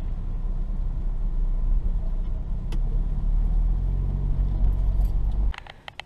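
VW Golf R's turbocharged four-cylinder engine running, a steady low rumble heard from inside the cabin, which cuts off suddenly about five and a half seconds in, followed by a few light clicks.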